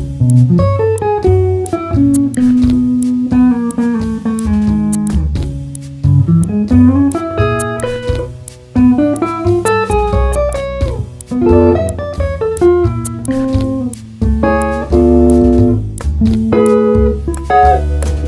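Instrumental break of a jazz-tinged pop song: a hollow-body electric guitar plays melodic runs that climb and fall, over a bass line and light percussion ticks.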